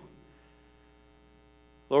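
Faint steady electrical hum made of many evenly spaced steady tones, heard in a gap between words. A man's voice resumes at the very end.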